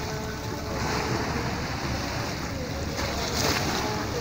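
Sea waves washing and breaking over shoreline rocks, a steady churning rush of foaming water, with a louder surge of spray about three and a half seconds in.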